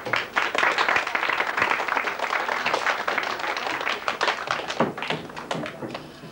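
Audience applauding, a dense patter of handclaps that thins out near the end.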